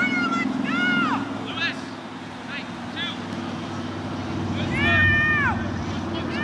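High-pitched shouts and calls from people at a youth soccer match, several short rising-and-falling cries and one long held call about five seconds in, over a steady low hum.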